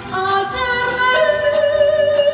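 A woman singing a mariachi song live, holding long notes with vibrato into a microphone, over a mariachi band with violins; the pitch changes about a second in.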